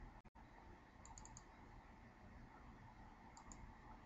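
Near silence with faint computer mouse clicks: a quick cluster of small clicks about a second in, and two more near three and a half seconds.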